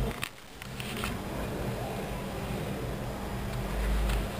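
Low, steady electrical mains hum with faint rustling and a couple of small clicks in the first second.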